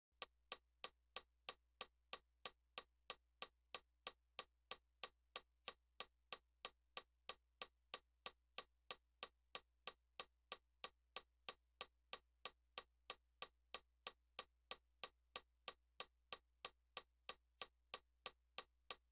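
Metronome clicking at a steady tempo, about three clicks a second, faint, over a low steady hum.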